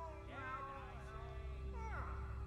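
Wordless vocal cries that rise and fall in pitch, then a short cry that drops in pitch near the end, over a low, steady sustained drone.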